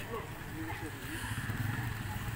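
A small motorcycle engine running with a steady low hum, under faint voices of people walking nearby.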